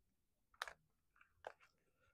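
Tarot cards being handled on a tabletop: two soft, sharp clicks, about half a second and a second and a half in, over near silence.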